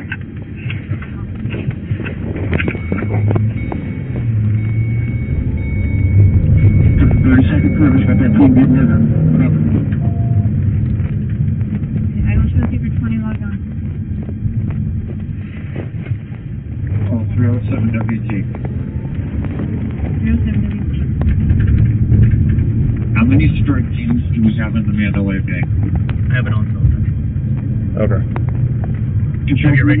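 Indistinct, muffled voices over a steady low rumble, picked up by a police body-worn camera's microphone, with a thin steady high tone for several seconds early on.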